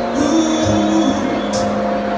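Live band music with held chords that change under a singer, and a bright cymbal hit about one and a half seconds in, heard from the crowd of a large arena.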